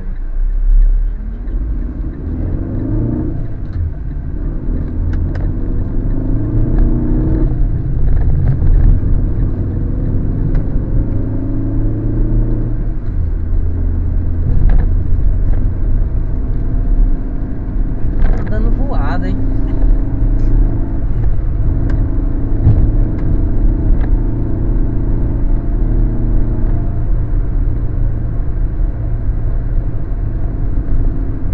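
Car engine and road noise heard from inside the cabin while driving, the engine note rising several times as the car accelerates.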